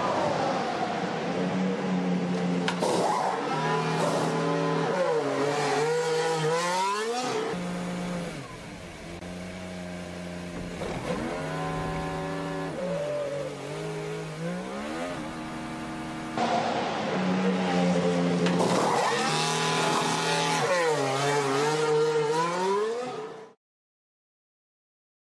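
Formula 1 car's turbo V6 engine in the pit lane: a steady note on the pit-lane speed limiter whose pitch swoops down and climbs again several times as the car slows into its box and pulls away. The engine is quieter through the middle stretch and louder again near the end.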